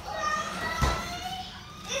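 Children's voices in the background, with one short thump a little under a second in.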